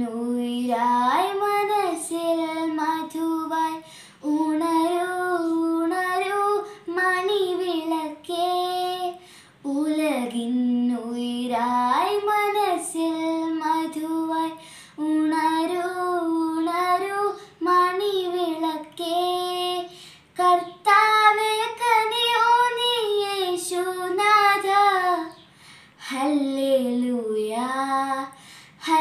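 A girl singing a Malayalam Christmas carol solo and unaccompanied, in held phrases with short breaks between them.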